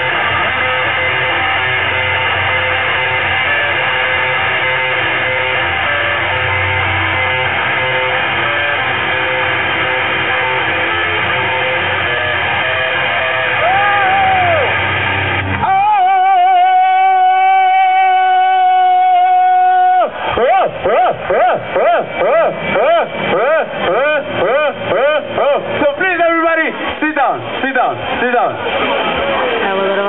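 Garage rock band playing live at full volume, guitar and drums loud and dense. About halfway through the band drops out abruptly, leaving one steady, high held tone for about four seconds. After that comes a wavering pitched sound that swoops up and down about twice a second until the end.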